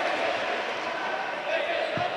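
Steady murmur of spectators and general noise in an indoor sports hall during a futsal match.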